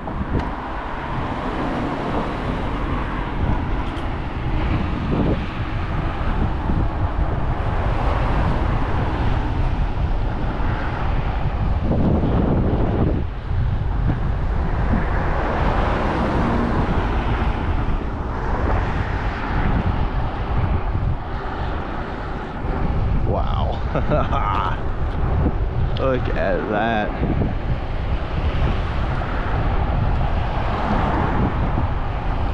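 Wind buffeting the microphone of a bike-mounted action camera over a steady rumble of passing car traffic on a busy road. A few short wavering pitched sounds come through near the end.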